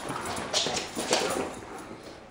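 Two small dogs playing rough on a hard wooden floor: paws and claws clicking and scrabbling in a handful of quick scrapes.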